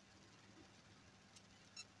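Near silence: faint steady low hum, with a faint click and one very brief high-pitched chirp near the end.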